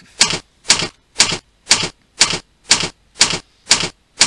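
Presentation-software slide-animation sound effect: a run of short, evenly spaced noisy bursts, about two a second, each starting with a sharp click.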